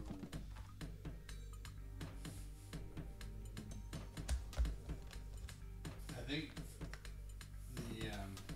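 Cardboard jigsaw puzzle pieces clicking and tapping as they are handled and pressed into place on the puzzle board, a rapid, irregular patter of small clicks, with a couple of duller knocks just past the middle. Background music plays underneath.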